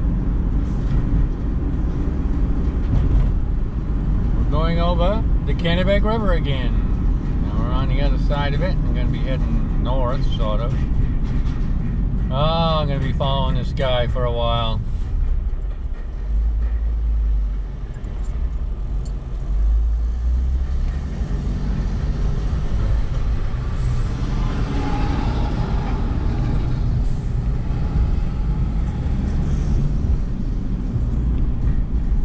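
Steady low rumble of a car's engine and tyres heard from inside the cabin while driving. A person's voice is heard for several seconds a few seconds in.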